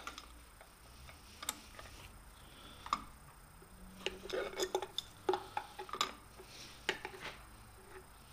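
Light, scattered metal clicks and ticks from an adjustable wrench on the lathe's change-gear quadrant nut and from the steel change gears being turned by hand. The clicks come in a closer run about halfway through.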